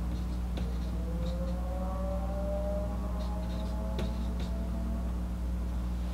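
Marker writing on a whiteboard: a few faint taps and light scratches over a steady low hum. A faint tone with overtones slowly rises in pitch through the middle.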